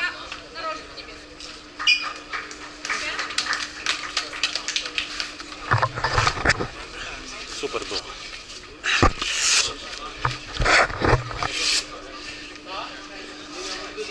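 Indistinct voices of people talking around a boxing ring, with clusters of loud knocks and rustles about six seconds in and again from about nine to eleven seconds in.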